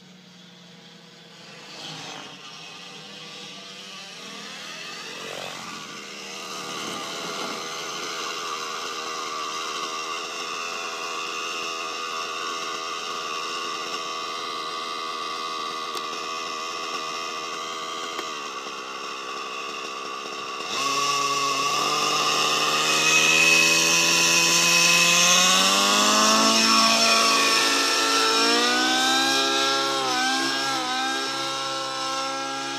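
Nitro engine and rotor of a T-Rex 700N radio-controlled helicopter in flight, growing steadily louder as it comes closer. A little past two-thirds through it jumps louder and its pitch climbs and bends as the engine revs up.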